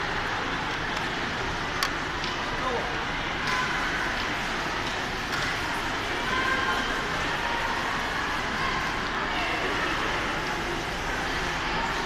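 Steady background noise of a large hall with distant voices talking indistinctly, and a single light click about two seconds in.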